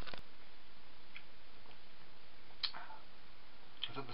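A man drinking from a small glass bottle: a sharp click just after the start, a couple of faint ticks, and a short sound a little past halfway as he takes the bottle from his mouth, over a steady low hiss.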